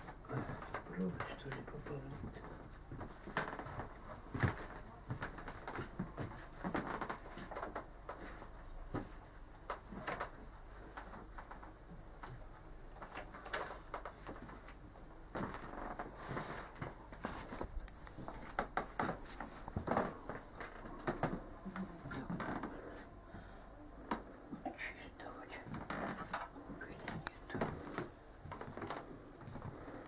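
Low, indistinct talk and whispering, with scattered light clicks and knocks of objects being handled.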